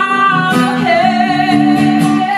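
Live song: a woman's voice holding one long sung note over acoustic guitar.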